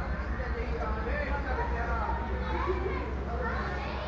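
People talking in the background, their voices indistinct, over a steady low rumble.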